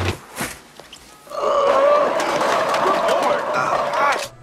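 A sharp slap, then a long, wavering yell over the clatter of a stacked display of tin cans crashing down and scattering across the floor.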